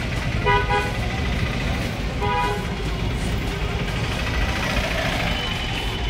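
Two short vehicle horn toots, about half a second and two seconds in, over a steady low traffic rumble.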